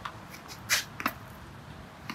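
Tennis half volley: a short scuffing burst, then about a quarter second later a sharp pop of the racket striking the ball low just after its bounce.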